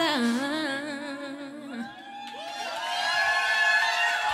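A woman's last sung note, wavering in pitch over the band's closing chord, ends about two seconds in; then the audience starts whooping and cheering, growing louder.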